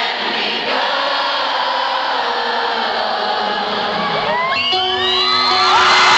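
Live concert audience cheering and singing, with the band's music beneath. About four seconds in, whistles and whoops rise over the crowd while a sustained note holds underneath.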